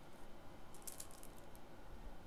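Faint clicks and crackles of a shrink-wrapped plastic CD jewel case being handled and turned over in the hand, a short cluster about a second in.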